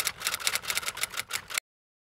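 Typewriter key-clack sound effect: a fast, slightly uneven run of sharp clicks, several a second, that stops abruptly about one and a half seconds in, leaving dead silence.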